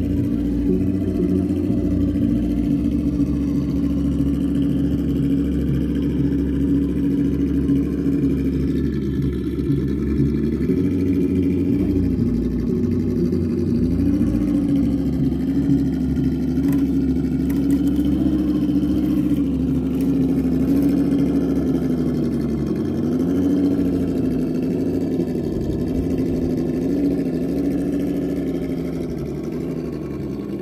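Simulated truck engine sound from an ESS-DUAL+ sound module in a RedCat Gen8 RC crawler: a steady low engine note whose pitch dips and rises a little several times as the throttle changes while it crawls over rock.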